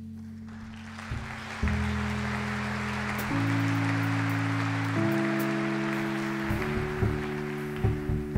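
Live big band playing an instrumental passage with no singing: sustained ensemble chords step higher about every second and a half over a hiss-like wash. Rhythmic hits come in near the end.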